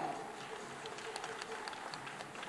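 A few scattered handclaps from the audience, sharp and irregular, over a faint murmur in the hall.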